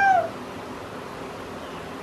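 A single short meow-like call, rising then falling in pitch, right at the start, followed by quiet room tone.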